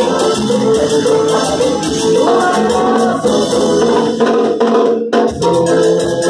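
Cumbia santafesina band playing live with a steady shaker and drum beat under the melody. The music breaks off for a split second about five seconds in, then comes back in.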